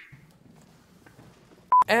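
A single brief censor bleep: one steady pure tone lasting about a tenth of a second near the end, after a stretch of faint room tone.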